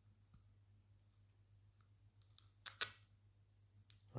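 A few light rustles, then a quick cluster of sharp clicks a little past halfway, the two loudest close together, from a small object being handled.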